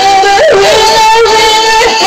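A woman singing a sustained high note over music, with a quick wavering run of notes about half a second in.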